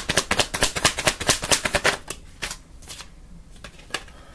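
A deck of tarot cards being shuffled by hand: a fast run of card clicks that stops about halfway through, then a few single taps.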